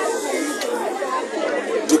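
Speech only: voices talking, with chatter behind them.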